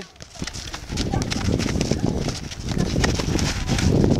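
Feet scuffing and running on a dirt football pitch, with sharp clicks and taps of shoes and ball. From about a second in, a low rumble of wind on the microphone runs underneath.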